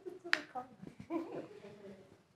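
A single sharp click about a third of a second in, over quiet, low speech.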